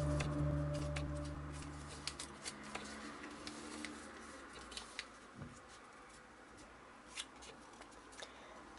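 Origami paper being folded and creased by hand: scattered soft crinkles and clicks of the paper. Sustained background music tones fade out over the first two seconds or so.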